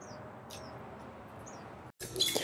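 A few faint, short, high chirps from a small bird, each falling in pitch, over low background noise; the sound cuts off suddenly just before the end.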